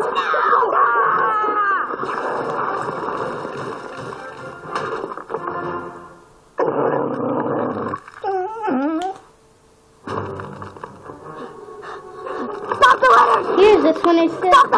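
A television playing a cartoon soundtrack in the room: background music with cartoon voices. The sound cuts suddenly about six and a half seconds in and drops briefly to quiet around nine seconds.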